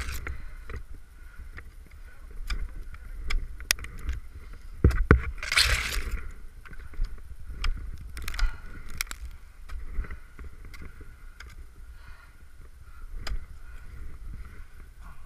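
Ice tools and crampons knocking and scraping into soft, wet waterfall ice: scattered short knocks, with one louder scraping burst about halfway through. Gear and clothing rub close to the microphone, adding a low rumble.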